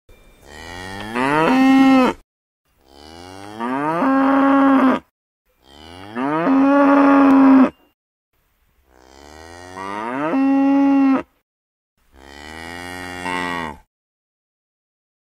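A cow mooing five times, each moo about two seconds long, rising in pitch and loudness and ending on a held note, with short gaps between them.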